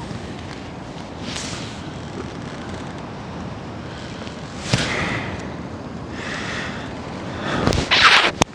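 Surf breaking on the shore and wind on the microphone, a steady rushing that swells several times. A sharp crack comes a little past halfway, and a louder rush near the end.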